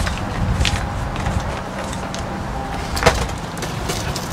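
Handling knocks from a portable generator as its handle is moved aside, with one sharp knock about three seconds in, over a steady low rumble.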